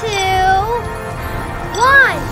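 Light background music with two short, high, squeaky cartoon vocal sounds. The first lasts under a second at the start. The second rises and falls in pitch near the end and is the loudest moment.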